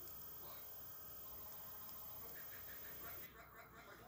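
Very quiet stretch of VHS tape playback: faint steady hiss and hum, with a faint run of soft, quickly repeated high blips in the second half.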